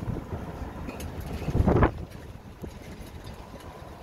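Wind rushing over the microphone and a low rumble from riding in a moving open-sided tour cart, with one louder rush a little before the middle.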